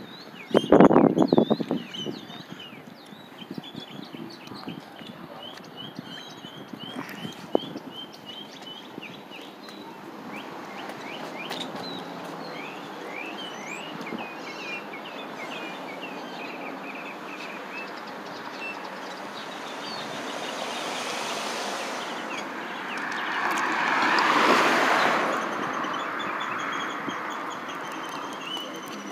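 Small birds chirping repeatedly over steady outdoor street noise. About three-quarters of the way through, a vehicle passes, its noise swelling and fading over a few seconds.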